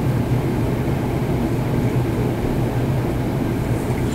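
Steady low hum under an even rumbling noise that does not change.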